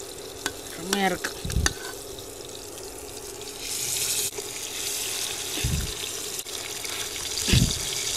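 Red snapper frying in shallow oil in a nonstick pan: a steady sizzle that swells briefly about halfway through as more fish go into the hot oil. A steady hum runs underneath, with a few low thumps.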